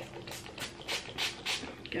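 Pump-action mist spray bottle being pumped in about five quick, short hisses, a third of a second or so apart, as its pump is primed to get the mist going.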